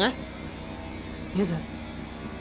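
A vehicle's engine and road noise give a steady low drone inside the cabin of a moving van, with one short spoken word about a second and a half in.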